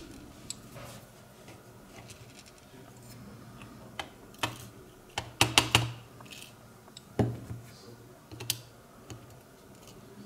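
Small brass lock parts and metal tweezers clicking and tapping against a plastic pin tray while a lock cylinder is disassembled: scattered light clicks, with a quick run of louder ones in the middle.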